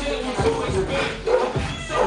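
Hip-hop music with a beat and a pitched, bending voice line.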